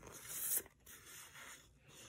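Paper sticker sheets rustling and sliding against each other as they are handled: a short rustle over the first half second that stops abruptly, then a few fainter ones.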